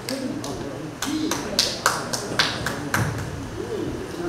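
Sparse, irregular handclaps from a small audience after the song has ended, with people talking quietly underneath.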